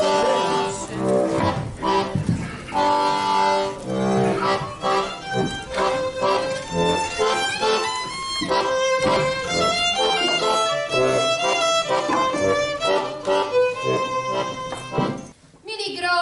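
Accordion and violin playing a tune together. The music stops about a second before the end.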